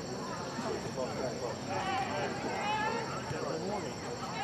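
Several voices of players and spectators calling out at once across a soccer field, overlapping and indistinct, with the calls strongest around the middle.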